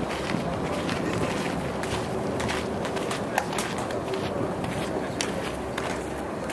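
Steady outdoor background noise with a few faint clicks or knocks scattered through it.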